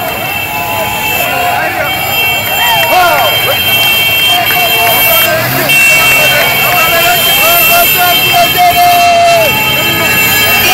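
Excited street crowd cheering and shouting, many voices at once, with motorbike and car engines and horns sounding among them.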